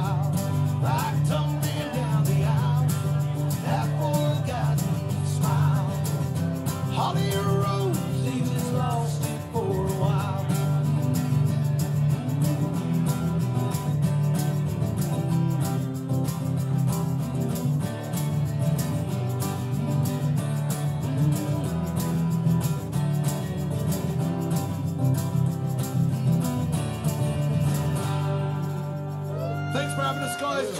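Two acoustic guitars strummed together with a man singing over them, most clearly in the first ten seconds.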